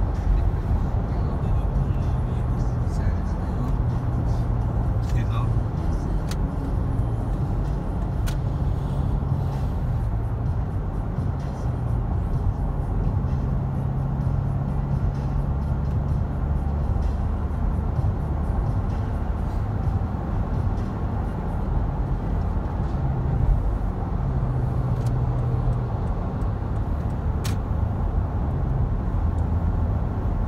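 Steady low drone of tyres and engine heard from inside a car cruising on a freeway, with a few faint clicks.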